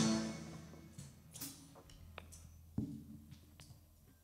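A live rock band of electric guitar, bass, drum kit, keyboard and violin ends a song: the final chord dies away within about a second. Then a quiet stage with a few faint clicks and knocks.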